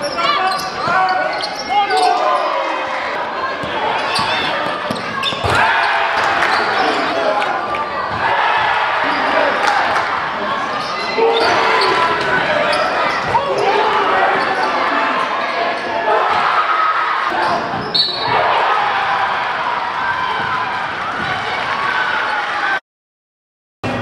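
Live basketball game sound in a gymnasium: a basketball bouncing on the hardwood court among scattered short impacts, over continuous crowd voices and shouting from the stands.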